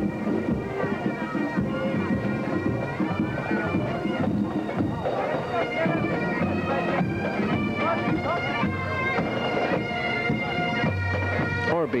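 Highland bagpipes of a marching pipe band playing a tune over their steady drones.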